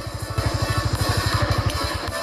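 Background music over a Suzuki Grasstracker Big Boy's single-cylinder engine running at low speed, its exhaust pulses coming evenly and rapidly as the bike rolls slowly.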